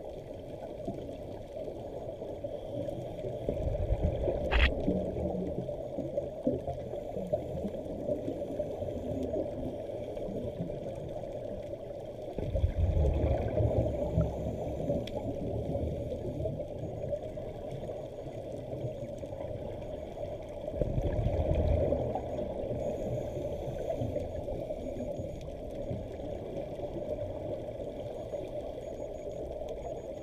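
Underwater sound through a GoPro housing: a steady muffled water hiss, with three louder bubbling rumbles of scuba regulator exhaust bubbles, about four, thirteen and twenty-one seconds in. A single sharp click comes a little after four seconds.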